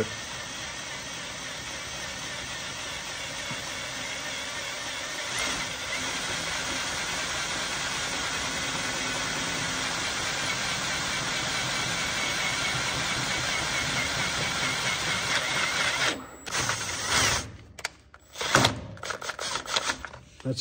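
Power drill running steadily as a bit opens up a hole in the soft metal case of a Hydro-Gear EZT 2200 transmission. It stops about sixteen seconds in, followed by a few short bursts of drilling near the end.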